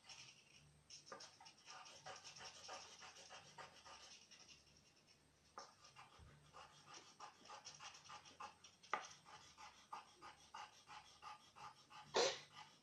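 Coloured pencils scratching on paper in quick back-and-forth colouring strokes, faint, with a short pause about five seconds in and one sharper stroke near the end.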